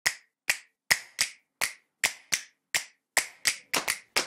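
A run of sharp, snapping clicks, each with a short ringing tail, from the intro sound effect of the title animation. They come about two to three a second at first and quicken into close pairs near the end.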